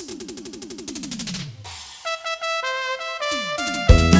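Electronic keyboard opening a regional Mexican dance song: a fast run of notes falling in pitch, then held synthesizer chords that change every half-second or so. A second quick falling run leads into the full band with heavy bass and drums, which comes in loudly near the end.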